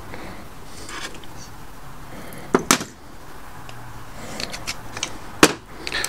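Small metal lock-cylinder parts being handled and fitted by hand: a few sharp clicks and taps over a quiet background, the loudest about two and a half seconds in and another near the end.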